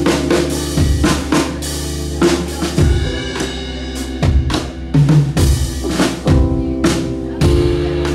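Live band instrumental passage: a drum kit playing kick, snare and cymbal hits over keyboard chords held underneath.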